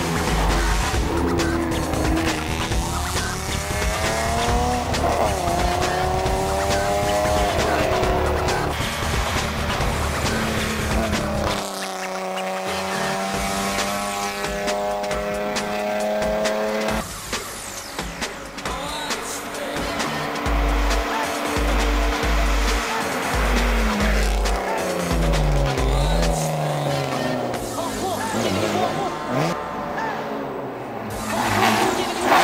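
Race car engine of a BMW E36 hill-climb car revving hard, climbing in pitch and dropping at each gear change as the car drives up the course, mixed with background music with a steady beat.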